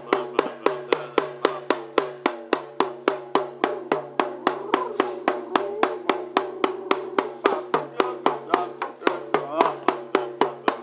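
Hand-held frame drum beaten with a stick in a steady, fast beat of about five strokes a second, with a steady low drone sounding under the beat.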